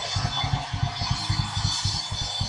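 Soft background music with a rapid pulsing low bass, playing under the pause in the prayer.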